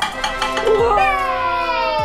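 Background music with an edited-in sound effect: a drawn-out pitched tone that slides slowly downward for over a second.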